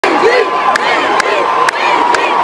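A large concert crowd in a stadium cheering and shouting, many voices at once, with a sharp click about every half second.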